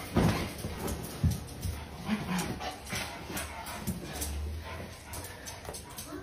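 A dog making short vocal sounds while it plays tug with a cloth blanket, with cloth rustling and a few knocks from the scuffle.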